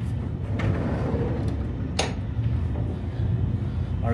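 Steady low rumble inside the carriage of a Deutsche Bahn ICE high-speed train, with a single sharp click about halfway through.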